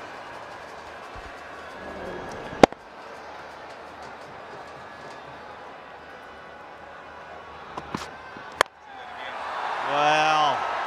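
Stadium crowd noise with a single loud sharp crack about two and a half seconds in. Near the end comes another sharp crack, a cricket bat striking the ball, and the crowd noise then swells.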